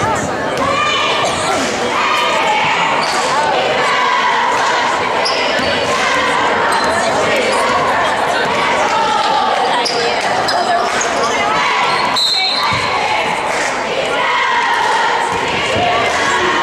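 A basketball dribbled on a hardwood gym floor, its bounces echoing in the large hall, under steady voices of spectators and players.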